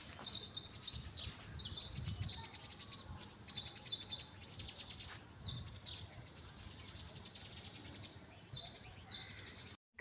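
Small birds chirping in quick repeated bursts of high notes, with a few soft low rumbles in between.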